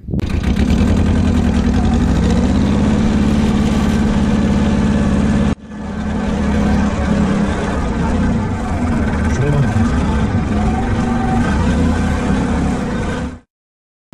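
Tractor engine running loud and steady as the tractor drives over a field. The sound drops out for a moment about five and a half seconds in and cuts off abruptly just before the end.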